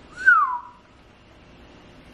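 A man whistles one short note through pursed lips, rising a little and then sliding down, about half a second long near the start; after it only faint room tone.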